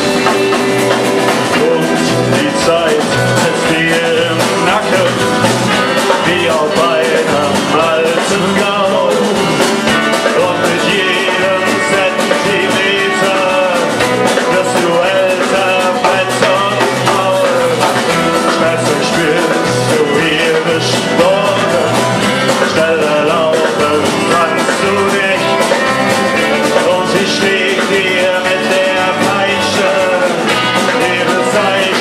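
Live indie rock band playing at full volume: guitars, bass guitar and a drum kit, heard through a room microphone. From about two seconds in, a voice sings over the band.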